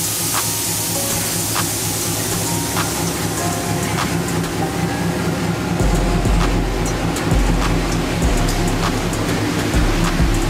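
Air suspension bags of a fifth-generation Camaro deflating with a hiss that fades away over the first few seconds as the car lowers toward the floor. Background music with a beat plays throughout, and deep bass comes in about six seconds in.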